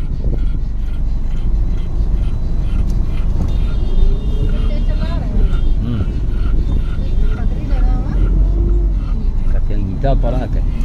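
Road noise inside a moving car's cabin: a steady low rumble from the engine and tyres, with indistinct voices over it in the second half.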